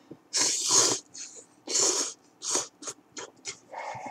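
A person slurping instant curry ramen noodles: one long, loud slurp about half a second in, then a second slurp and a string of short sucking slurps.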